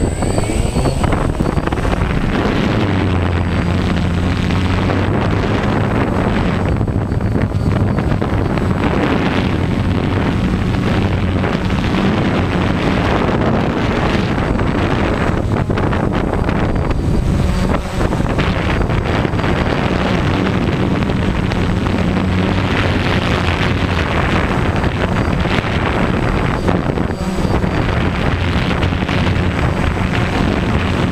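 DJI Phantom quadcopter's electric motors and propellers running with a steady buzzing hum, heard from the GoPro mounted on it. The hum grows stronger about two to three seconds in and its pitch wavers a little as the drone flies low.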